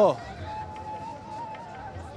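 Busy street ambience around market stalls, with a faint sustained tone held for over a second in the middle.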